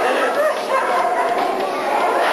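People's voices talking over a busy background of chatter.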